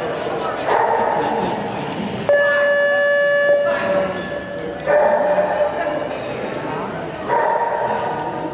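Dog barking and yipping repeatedly while running an agility course.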